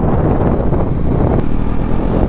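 Bajaj Pulsar NS400Z motorcycle on the move at about 54 km/h, its engine and tyre noise mixed with heavy wind buffeting on the rider-worn microphone. The sound is steady, with no gear change or rev.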